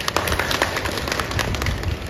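Audience applauding: a short burst of many hands clapping, dying away near the end.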